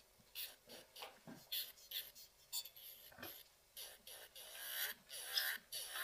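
Electric nail file with a sanding band buffing a plastic nail tip in short, irregular raspy scrapes, about two or three a second, as the band touches and lifts off the nail to sand away the excess plastic where the tip blends into the natural nail.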